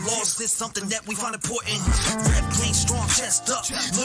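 Hip hop music with a rapped vocal over deep bass notes that slide down in pitch.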